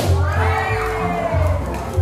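Children shouting and cheering over background music with a steady bass beat.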